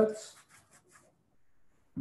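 A cloth kitchen towel rubbing over a freshly rinsed zucchini to dry it: a few soft brushing strokes in the first second, then little more than faint rustles.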